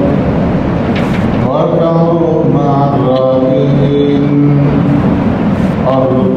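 A man's voice chanting melodically in long, drawn-out held notes that glide between pitches, as in a recitation, with a stretch of rushing noise under it in the first second and a half.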